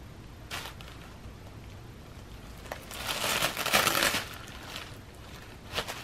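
Crumpled packing paper crinkling as a cat paws at it: a short rustle about half a second in, a longer, louder crinkling from about three to four seconds, and another short rustle near the end.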